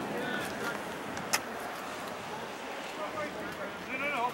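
Distant shouts and calls of rugby players on the pitch over a steady outdoor noise, with one sharp click about a third of the way through.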